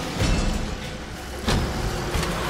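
Horror film trailer soundtrack: a low rumbling drone with a sharp hit about one and a half seconds in.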